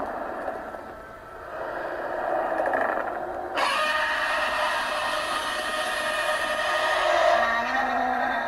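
Film soundtrack playing from a screen: a rushing, noisy sound effect with no tune, which grows brighter and fuller about three and a half seconds in.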